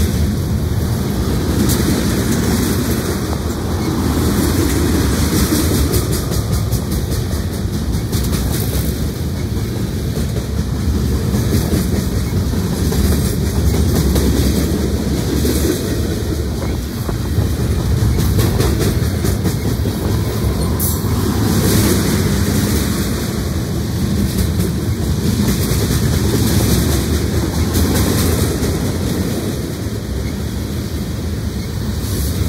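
Norfolk Southern freight train's cars (covered hoppers, boxcars and tank cars) rolling past close by: a steady loud rumble with wheels clicking over the rail joints.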